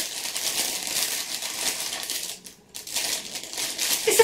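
Clear plastic packaging crinkling and crackling as a pair of flip-flops is pulled out of the packet, with a brief lull a little past halfway.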